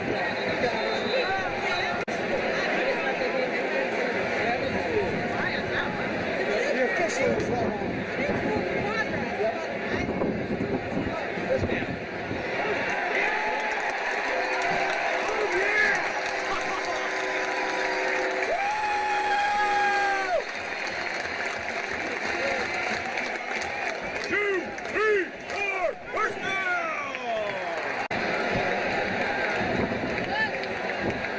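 Stadium crowd at a college football game: a steady din of many voices talking and shouting. About two thirds of the way through, a single steady tone is held for about two seconds, and near the end a few louder shouts rise and fall.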